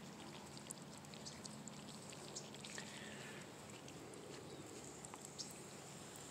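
Faint trickle of water at a drip-irrigation emitter as the just-switched-on line starts to flow, with a few small scattered clicks.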